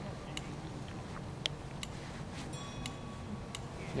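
Fireworks popping faintly: a handful of sharp, irregular cracks spaced about half a second to a second apart, over a low steady rumble.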